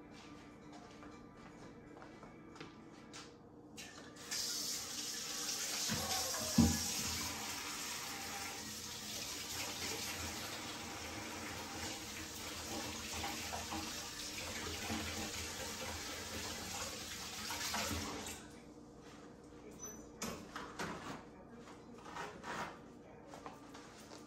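Kitchen faucet running into a sink for about fourteen seconds, starting about four seconds in, with one sharp knock shortly after it starts. A few light clatters follow once the water stops.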